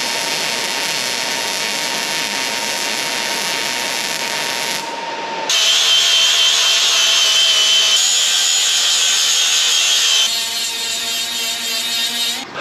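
Wire-feed welder crackling steadily as a bead is laid on steel gate tubing, stopping about five seconds in. Then an angle grinder starts and grinds the weld with a loud, steady high whine, and near the end a smaller grinder with a mini sanding disc takes over, a little quieter.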